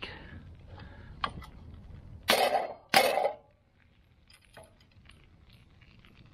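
Cast-iron double pie iron clanking and scraping against a steel campfire grate as it is turned over and opened, with a light knock and then two loud clanks a little past the middle.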